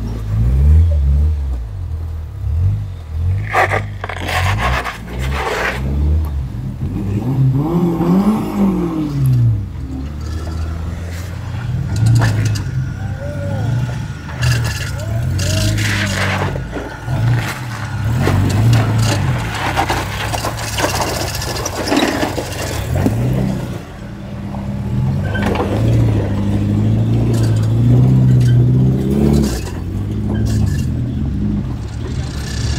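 Small four-cylinder rock-crawler engines pulling at low speed over boulders, revving up and easing off several times. Scraping and knocking of tyres and underbody against rock at intervals.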